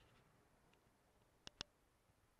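Near silence, with two sharp clicks about a tenth of a second apart a little after the middle.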